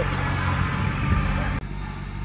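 Kubota compact tractor's diesel engine running steadily, a low hum under a noisy rush. The rush cuts off abruptly about a second and a half in, leaving a quieter hum.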